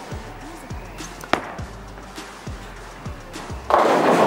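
Soft background music with a regular low beat and a single sharp click about a third of the way in. Near the end comes a sudden loud crash of bowling pins as the ball hits them.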